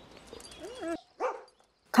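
A golden retriever making a few short whining and barking sounds, the sharpest one a little after a second in.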